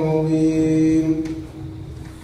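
A man's voice reciting the Qur'an in Arabic in a melodic chanting style, holding one long drawn-out note that weakens about a second and a half in.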